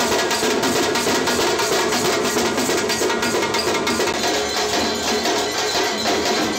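Music driven by drums and percussion, playing a loud, steady beat without a break.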